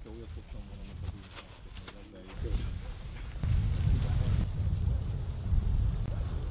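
Faint voices and a few light clicks, then a louder, low rumbling noise from about three and a half seconds in.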